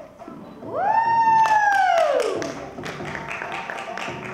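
An audience member gives a shrill cheering "woo" that swoops up in pitch, holds, and slides back down over about two seconds. Scattered clapping runs under it and carries on after it.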